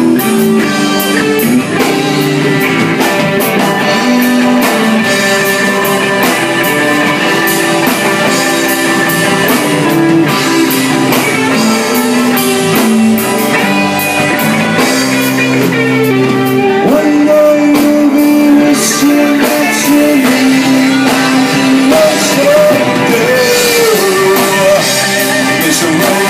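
Live band playing a song: guitars with a man singing over them and drums keeping time.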